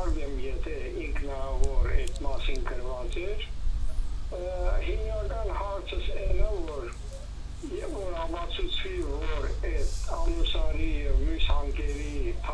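A caller's voice speaking over a telephone line into the broadcast, with a steady low hum underneath.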